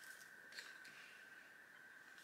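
Near silence: room tone with a faint steady high tone and one faint tap about halfway through.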